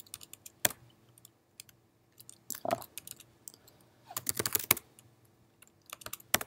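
MacBook Pro laptop keyboard being typed on: a few scattered keystrokes, then a quick run of keys about four seconds in as a terminal command is entered.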